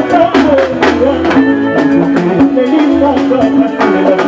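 Live Congolese rumba band playing loud: drum kit strikes on a steady beat under electric guitar lines.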